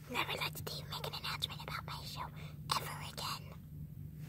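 Faint whispering voice, broken into short hissy patches, with scattered soft clicks and rustles of the phone being handled.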